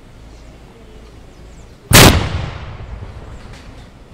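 A single loud salute gunshot of a military honours ceremony: one sharp blast about halfway through that echoes away over about a second.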